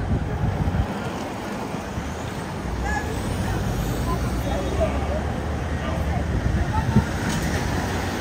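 Motor vehicles driving past on a town street: a steady rumble of traffic, with indistinct voices of people nearby.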